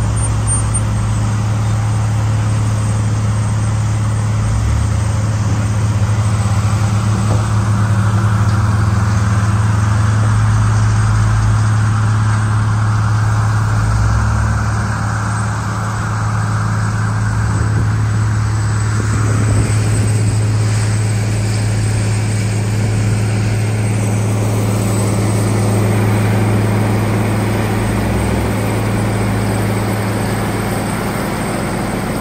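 Heavy diesel machinery running loudly and steadily: a John Deere 544K wheel loader working its bucket in a mulch pile and driving to the feed, over the constant deep drone of a Morbark tub grinder's engine.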